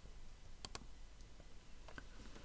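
Two quick clicks of a computer mouse about two-thirds of a second in, then a fainter click near the end, advancing a presentation slide; otherwise quiet room tone with a low hum.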